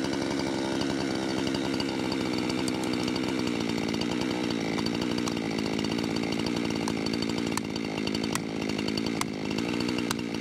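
Chainsaw idling on the ground, a steady engine note, while an axe strikes the felling wedges in the back cut of a tree being felled: three sharp hits near the end, less than a second apart.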